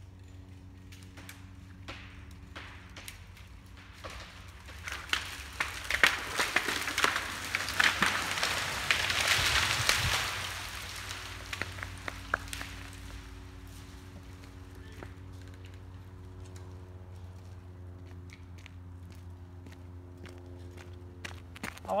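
Come-along ratchet clicking as it is cranked to pull a tall pine over, then the decayed trunk giving way: a run of sharp wood cracks and a long rush of branches through the trees, building from about five seconds in, loudest around ten seconds, and dying away by about twelve seconds.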